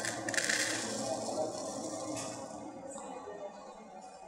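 Hulled sunflower seeds poured from a plastic bag into a plastic measuring cup, a rustling patter that is loudest in the first two seconds and then tails off.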